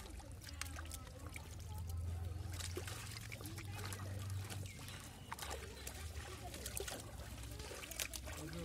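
Wet mud and water sloshing and trickling as muddy water is scooped by hand with bowls and tipped into woven baskets, with many scattered short knocks and clicks.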